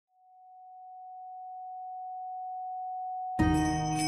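A steady pure sine tone at 741 Hz, a solfeggio frequency, fading in slowly from silence. About three and a half seconds in, music enters suddenly on top of it while the tone carries on.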